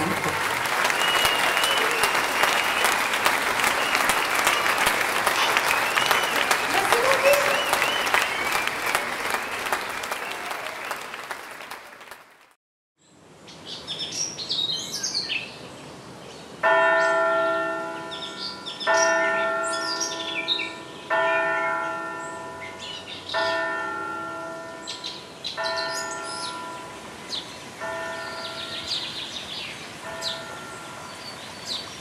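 A crowd cheering and applauding with whistles, fading out over the first twelve seconds. After a short silence a church bell tolls, one strike about every two seconds, with birds chirping.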